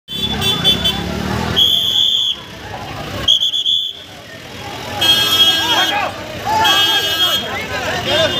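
Vehicle horns honking in repeated blasts of about half a second to a second each, roughly every one and a half seconds, with voices shouting between and over the later ones.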